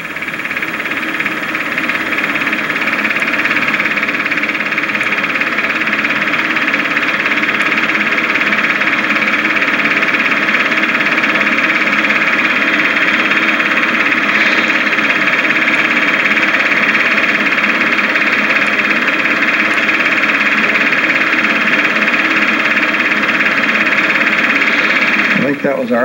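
Super 8 movie projector running: a steady mechanical whirr with a set of fixed hums, swelling up over the first couple of seconds and then holding level.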